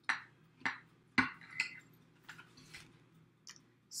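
A kitchen knife clinking and knocking against a plate and dishes while cake is cut and served. There are a few sharp clinks, the loudest a little over a second in, followed by fainter taps.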